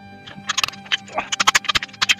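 Hand hammer blows on a steel bar over the anvil, a quick run of sharp metallic strikes that is densest in the second half, with background music underneath.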